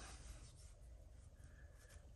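Near silence: faint rubbing of fingers working wax into a steel axe head.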